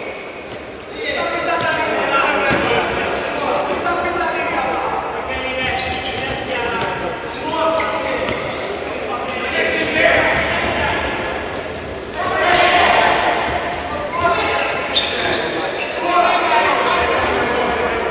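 A futsal ball being kicked and bouncing on a hard indoor court, with a few short thuds that echo in a large sports hall. Continuous talking, most likely commentary, runs over most of it.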